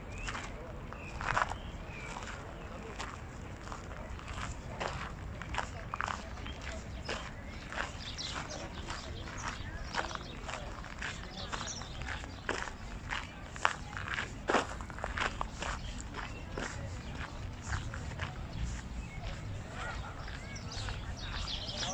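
Footsteps: irregular sharp clicks under a steady outdoor hum, with people's voices in the background.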